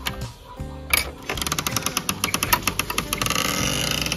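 A wooden door clacks open about a second in, then a flock of young chicks peeps busily, a dense stream of rapid high chirps that grows louder.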